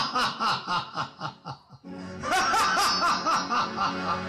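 A person laughing in two bouts of rapid, repeated pulses, about five a second, with a short break in between, over background music.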